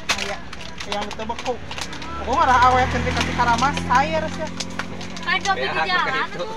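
Voices talking and calling out around a market stall. A low, steady engine rumble comes in about two seconds in and fades near the end.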